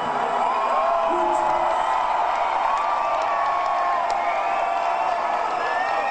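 Concert crowd cheering, with long, drawn-out whoops and shouts from many voices over the mass of the crowd.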